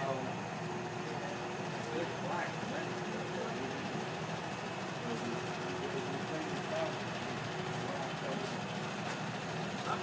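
Steady hum of an idling vehicle engine, with faint indistinct voices.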